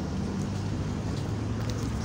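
Street traffic: a vehicle engine running with a steady low hum over road noise.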